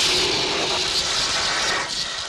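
Whooshing sound effect for an animated TV station logo: a loud rush of noise, mostly high-pitched, that starts suddenly and holds steady, easing a little near the end.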